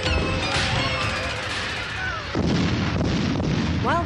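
Electronic music with sliding synth tones, cut off about two and a half seconds in by the dull, rumbling booms of fireworks going off.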